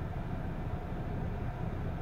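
Steady low rumble of background noise inside a car cabin, from the car's running engine or ventilation fan, in a pause between words.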